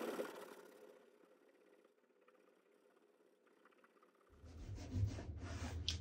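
Damp cloth rubbing wet paper off a gesso panel, fading out within the first second, then near silence for about three seconds. Faint rubbing and room noise with a low hum come back near the end.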